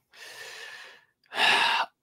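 A man's audible breathing: a soft, drawn-out breath, then a louder, shorter, sharper one about a second and a half in.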